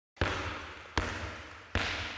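A handball bounced three times on a sports hall floor, about one bounce every 0.8 s. Each bounce is a sharp slap that rings on in the hall's echo.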